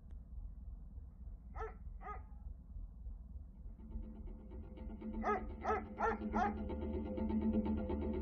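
A dog barking: two short barks, then a run of four more about five seconds in, with music playing under the later barks.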